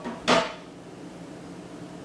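A single knock of kitchenware against the counter about a third of a second in, then quiet kitchen room tone.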